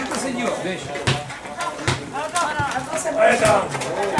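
Live sound of an amateur football match: players shouting calls to one another on the pitch, with a few sharp thuds of the ball being kicked.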